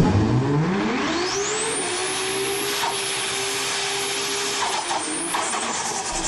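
Engine revving sound effect: the pitch climbs over about the first two seconds and then holds steady, with a hissing whine rising above it.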